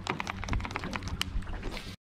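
Baitcasting reel being cranked during a retrieve, giving a run of quick, irregular clicks over a low wash of wind and water. The sound cuts out abruptly at the very end.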